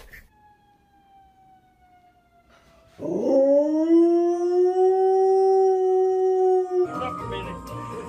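A dog howling: one long howl that swoops up at its start and then holds steady for about four seconds before breaking off. A faint falling tone comes just before it. Near the end, music takes over.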